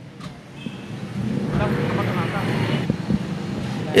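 A motor vehicle's engine rumbles, swelling about a second in and holding steady for a couple of seconds, with faint voices in the background.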